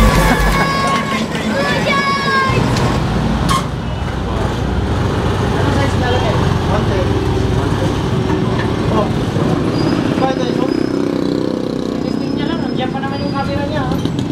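Street traffic: a steady low rumble of vehicle engines, with people talking in the background near the start and again near the end.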